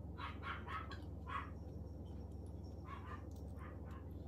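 A dog barking in short, quick barks: a run of four in the first second and a half, then two more around three seconds in. A steady low hum runs underneath.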